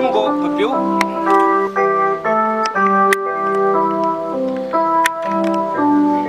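Instrumental music on an electronic organ or keyboard: a slow melody over held, sustained chords that change every half second or so.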